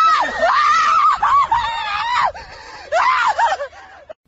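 A woman screaming loudly in fright in a run of long, high-pitched shrieks with short breaks between them, the last dying away shortly before the end.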